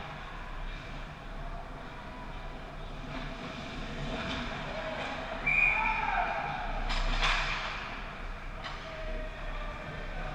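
Ice hockey rink during play: skates scraping and carving the ice over the steady hum of the arena. A short, loud high-pitched sound comes about halfway through, then two sharp cracks a second or so later as play crowds the net.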